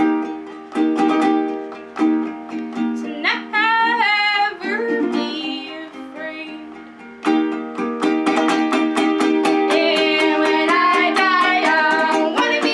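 Ukulele strummed with women singing: slow, ringing chords for the first half, then fast, steady strumming from about seven seconds in, with the voices over it.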